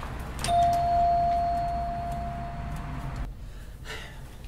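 A door latch clicks and an electronic entry chime on a business's glass front door sounds one clear, steady tone as the door is opened. The tone holds for nearly three seconds and cuts off suddenly.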